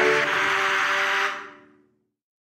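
Rushing water of a rocky mountain stream mixed with background music holding several steady notes; both fade out to silence about a second and a half in.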